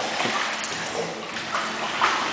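Water splashing and sloshing in a hydrotherapy pool as a dog paddles, held by a person wading beside it; a continuous, even wash of water noise.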